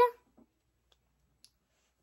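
A boy's drawn-out sung word cutting off just after the start, then a pause of near silence broken by a few faint ticks.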